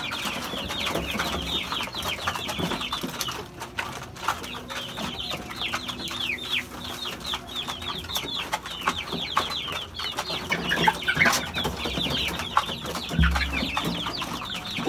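Hungry young chickens peeping in a dense, continuous chorus of short, falling high-pitched cheeps, with an occasional cluck. A low thump comes near the end.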